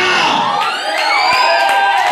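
Many voices of a church congregation singing and calling out together, some cries gliding upward in pitch.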